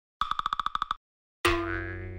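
Intro logo sound effects: a quick run of about ten rapid beeping pulses lasting under a second, then, after a short gap, a single sudden ringing note that slowly dies away.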